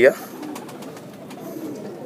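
Domestic pigeons cooing softly, two or three low coos.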